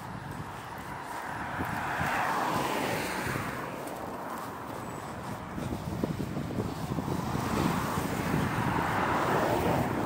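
Cars passing on a wet road: two swells of tyre hiss, one about two seconds in and another building towards the end, over a steady traffic rumble.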